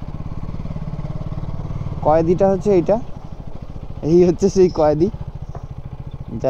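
KTM motorcycle engine running steadily at low speed with a rapid, even pulse. A man's voice speaks briefly over it twice, about two seconds in and again about four seconds in.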